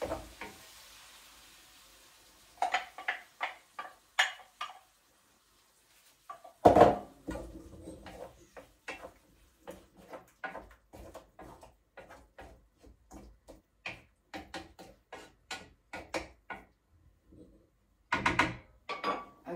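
Kitchen utensils knocking and clinking against a frying pan and the egg jug: a faint hiss fades over the first two seconds, then come quick taps and clinks, a heavier knock about seven seconds in, and a steady run of light taps after it.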